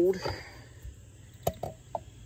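A few short, light taps and clicks from a spin-on oil filter being handled and turned over, about one and a half seconds in and again just before the end, after a spoken word fades out.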